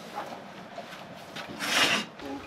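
A short, loud hiss about one and a half seconds in, over faint background noise.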